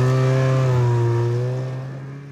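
Cartoon snowmobile engine running with a steady droning tone, fading away over the second half.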